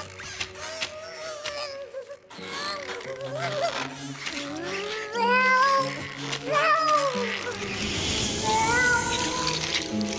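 Cartoon background music with a character's wordless whining cries that slide up and down in pitch, heard several times over the score.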